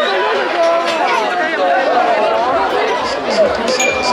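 Crowd of spectators talking and shouting over one another, many voices at once, with a brief sharp knock a little before the end.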